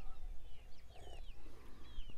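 Birds chirping: short high chirps that slide downward, repeated several times, over a low steady rumble.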